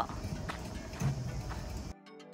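Open-air ambience: a low, uneven rumble with a few faint knocks about half a second and a second in. It stops abruptly near the end as music cuts in.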